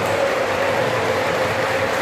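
Large crowd of supporters chanting together in a sports hall, a loud steady wall of voices with a faint sung tone running through it.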